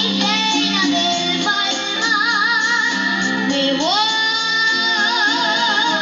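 A young girl singing into a microphone over a live band's accompaniment, with vibrato on her held notes; about four seconds in her voice slides up into a long sustained note.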